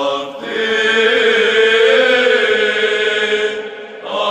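Orthodox church chant: voices sing long held notes, with a brief break about a third of a second in and a new phrase starting right at the end.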